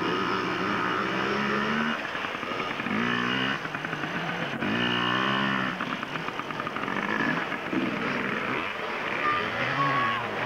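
Yamaha PW50 minibike's small two-stroke engine revving up and down in short bursts as it works through a muddy puddle.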